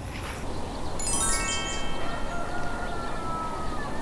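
A quick rising run of chime notes about a second in, the tones ringing on and slowly fading: a chime sound effect laid over the picture.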